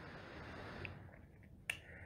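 Faint room noise with a single short, sharp click near the end.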